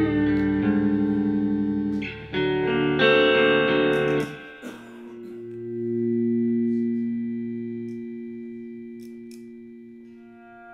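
Electric guitar played through effects pedals: loud, distorted sustained chords with a brief dip about two seconds in, cutting off at about four seconds. A softer held tone then swells up and slowly fades away.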